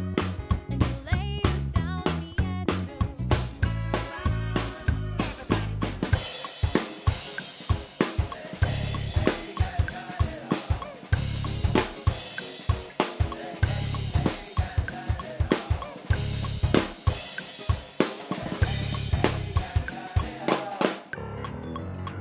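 Full drum kit with Sabian cymbals played to a backing track: a busy beat of kick, snare and cymbal strikes over the band's pitched bass notes. The strikes thin out about a second before the end, leaving mostly the backing music.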